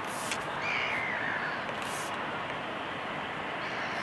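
A bird calling over steady outdoor background noise: one drawn-out falling call about a second in, and another beginning near the end.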